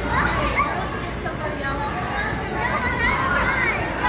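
Children playing in an inflatable bounce house: many high children's voices chattering and calling out over one another in a continuous din.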